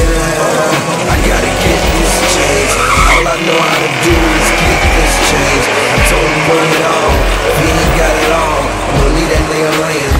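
Drag-race cars running down the strip at full throttle with tire squeal, mixed with hip hop music on a heavy, regular bass beat.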